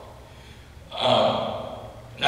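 A man's voice pausing, then saying one short phrase about a second in that trails off.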